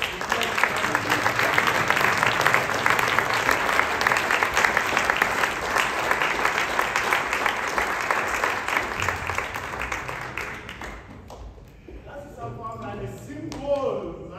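Audience applauding, strong for about ten seconds and then dying away. A man's voice comes in near the end.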